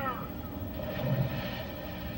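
Soundtrack of a cartoon playing through the speaker of a restored 1954 RCA CT-100 colour TV, with faint voices and a steady low buzz in the audio. The buzz is induced by the Macrovision copy protection on the DVD.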